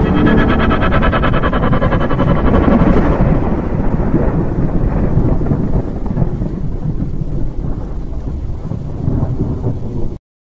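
Thunder: a sharp crackle over the first three seconds, then a long rolling rumble that slowly fades.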